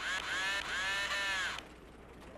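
A nasal, voice-like call in two swells, each rising and then falling in pitch, lasting about a second and a half.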